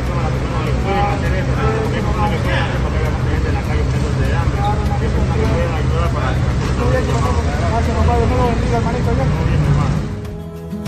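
Steady low rumble of road traffic with indistinct voices talking over it.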